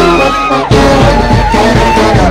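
Brass marching band playing live, with trombones, trumpets and sousaphone. A high held note bends down about half a second in, and another is held through the second half over the band's lower parts.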